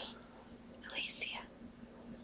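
A brief, faint whisper about a second in, during a pause in conversation.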